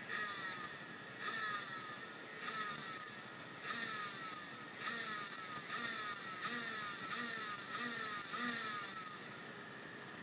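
Race motorcycle engines ticking over with repeated throttle blips about once a second, the revs jumping up and dropping back each time.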